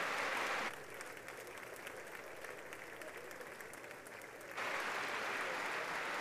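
Applause from a large crowd, many hands clapping. It drops to a lower level about a second in and swells back up near the end.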